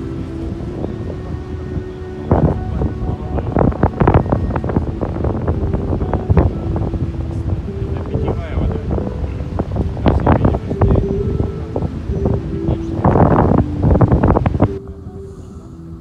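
Wind buffeting the microphone in irregular gusts over a low, steady hum of tones, dropping away sharply near the end.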